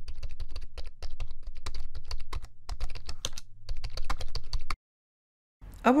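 Rapid, irregular computer-keyboard typing clicks over a low rumble, used as a sound effect, stopping abruptly a little before five seconds in.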